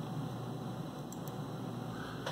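Steady faint hum and hiss of room tone, with no motor running: the Syil X4 mill's spindle has been commanded to 555 but is not turning.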